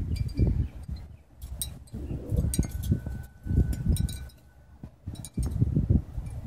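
Wind chimes tinkling intermittently over irregular low rumbles of wind buffeting the microphone.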